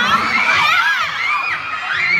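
A crowd of fans shouting and cheering excitedly, many high-pitched voices overlapping.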